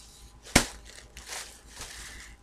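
A thin plastic shopping bag being handled and rustled, with one sharp crinkle about half a second in followed by softer crackling.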